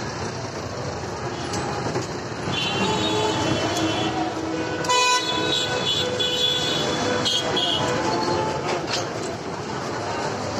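Busy street traffic noise with vehicle horns tooting several times, around three, five and seven and a half seconds in.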